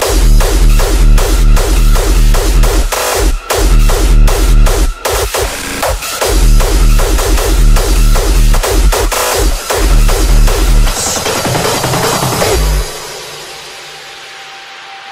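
Hardstyle/rawstyle electronic dance music driven by heavy distorted kick drums in a fast, steady beat. About a second before the end the kicks stop and the track drops to a much quieter breakdown.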